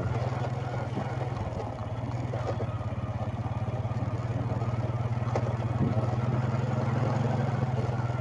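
Motorcycle engine running steadily at low riding speed, heard from the rider's seat, easing off briefly just under two seconds in before picking up again.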